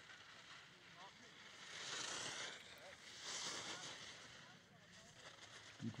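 Faint hiss of skis carving on hard snow, swelling twice as the skier runs through two giant slalom turns.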